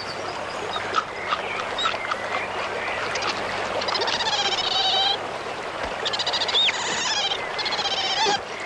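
Animal calls: bursts of rapid, repeated chirping notes about four and seven seconds in, and a few short hooked whistles, over a steady noisy background.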